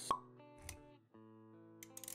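Animated logo intro: a sharp pop just after the start, a brief low thud a little later, then sustained electronic intro music with small clicking effects returns after about a second.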